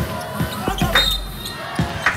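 Basketball dribbled on a hardwood court, a run of repeated bounces, with a brief high sneaker squeak about a second in.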